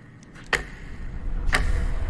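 Two sharp ticks about a second apart over quiet room tone, with a low rumble swelling underneath.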